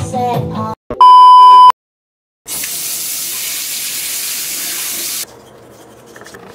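A song with singing ends, then a loud, steady electronic beep sounds for under a second. After a brief silence, water runs from a tap in a steady rush for nearly three seconds and then cuts off.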